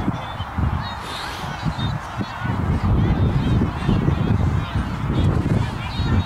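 Wind buffeting the microphone in uneven low gusts, with faint short high-pitched calls in the distance.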